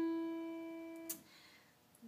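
A single piano note, the E above middle C, struck once and ringing as it fades, then cut off with a small click about a second in as the key is let go.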